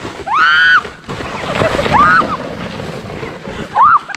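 Plastic sled sliding down packed snow, a steady rushing hiss, with a girl's high-pitched shriek about half a second in and shorter yelps in the middle and near the end.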